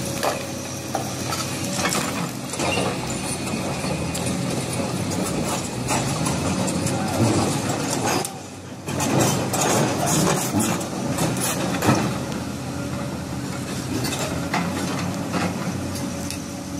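Large Volvo crawler excavator's diesel engine running steadily under load, with repeated knocks and scraping of stone as its bucket works a marble block loose.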